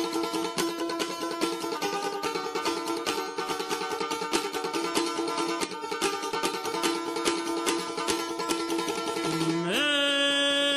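Chechen dechig pondar, a three-string plucked lute, playing a fast, densely plucked instrumental introduction. Near the end a man's voice slides upward into a long held note as the song begins.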